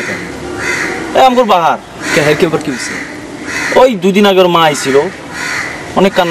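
Crows cawing repeatedly outdoors, a series of short harsh calls, with a man speaking in between.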